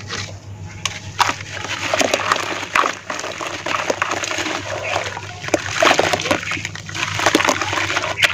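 Hands squeezing and crumbling wet lumps of red dirt in foamy water in a plastic basin, with irregular splashing and sloshing as the mud breaks apart and the water is stirred.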